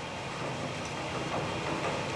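Low, steady rumbling ambience from an anime fight scene's soundtrack, with no speech.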